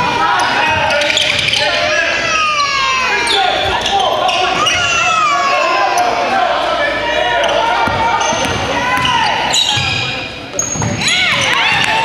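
A basketball being dribbled on a hardwood gym floor, with sneakers squeaking and players calling out across the echoing hall.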